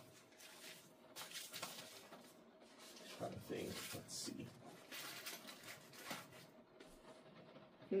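Faint rustling and scuffing of a padded rifle case and gear being handled as items are fitted into it, in short, irregular bursts.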